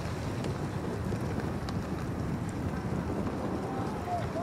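Strong wind buffeting the microphone outdoors: a steady low rumble of noise with a few faint ticks.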